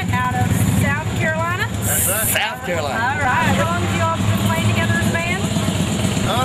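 Voices talking over a steady low engine-like rumble, with a short hiss about two seconds in.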